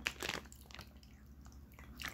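A few faint crinkling, clicking handling sounds in the first half second, as the wax-melt packaging is handled, then a quiet stretch with only a low steady hum.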